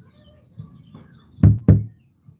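Two quick knocks on a door, about a quarter second apart, near the end.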